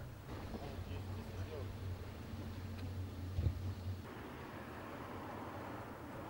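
A car engine running with a steady low rumble and faint voices; the rumble stops about four seconds in, leaving an even outdoor hiss.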